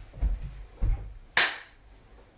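Two foot stomps on a wooden floor, right then left about half a second apart, followed a moment later by a single sharp hand clap: part of a steady body-percussion pattern.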